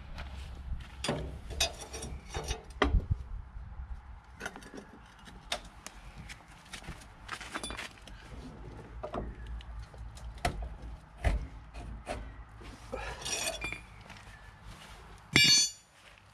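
Irregular light clinks and knocks of metal parts and tools being handled, over a low rumble, with a short louder clatter near the end.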